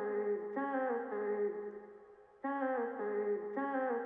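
Vocal-chop sample from the Output Arcade plugin's 'Hooked' kit played back from the piano roll: a two-note vocal phrase that fades and then starts over about halfway through.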